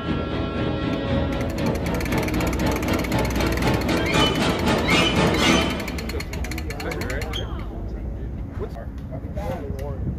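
Indistinct voices and music over a steady low rumble.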